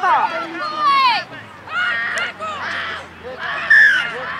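Overlapping shouts and calls from spectators and players across a rugby field, with high-pitched children's voices among them and one loud, high call near the end.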